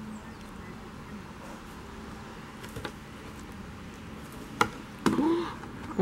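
A brown bear knocking a heavy wooden log about. A faint knock comes about three seconds in, then two sharp, loud knocks half a second apart near the end.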